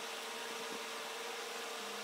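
Steady electric motor hum: one constant buzzing tone over an even hiss.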